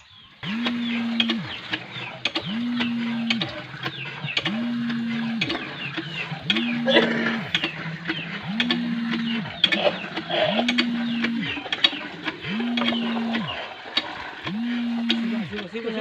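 Hand pump groaning with each stroke of its handle: a level-pitched squeal about a second long, repeating evenly every two seconds, eight times in all. Water runs from the spout into a metal pot.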